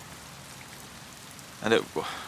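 Steady rain falling, an even hiss, until a man's voice comes back near the end.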